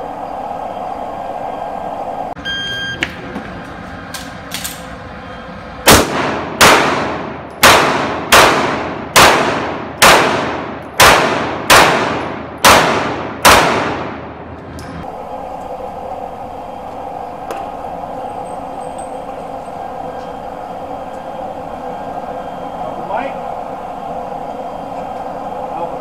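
Shot timer's start beep, then ten pistol shots at a steady pace of a little under one a second, each ringing out with a long reverberant tail inside an indoor firing range. A steady hum remains after the last shot.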